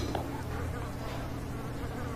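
A steady low buzzing hum under faint room noise, in a pause between speech.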